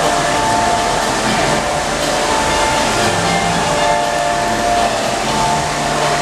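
Steady noise of a crowded lobby, with faint held tones that come and go.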